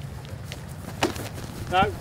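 A tackle in a rugby drill: footsteps on grass, then one sharp thud of body contact about a second in, over a low murmur of onlookers.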